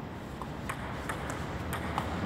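Table tennis rally: a celluloid ball clicking off the players' paddles and the table, about six quick sharp clicks in two seconds.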